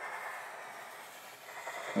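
Sharpie marker tip sliding across paper as a long curved line is drawn: a faint, steady hiss.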